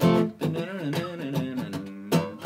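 Acoustic guitar: a chord strummed at the start and left ringing, followed by a short melodic phrase, played as the hoped-for G major version of the passage rather than the G minor power chord the song uses.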